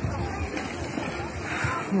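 Bathing-pool water splashing and sloshing, with faint voices of people in the background.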